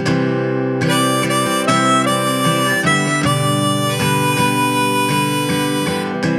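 A Hohner harmonica in G plays a solo melody over a strummed Martin D-18 acoustic guitar. The guitar strums alone briefly, then the harmonica comes in just under a second in with held notes that step from pitch to pitch.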